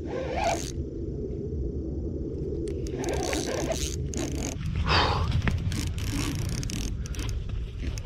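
Spinning reel in a fight with a large Chinook salmon: short zipping scrapes from the reel a few times, with a few sharp clicks near the end, over a steady low rumble of handling noise.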